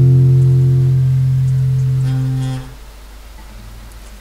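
A strummed guitar chord rings out and slowly fades, then stops about two-thirds of the way through. After that only the low hiss and mains hum of the cassette recording remain.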